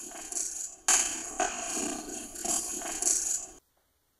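A short stretch of noisy, hissing recorder audio, replayed back to back, starting afresh about a second in and cutting off suddenly near the end. It is presented as an EVP, a voice saying "kill the people".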